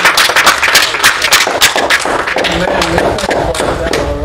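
Hand clapping from several people, quick and irregular, thinning out in the second half, with voices coming in near the end.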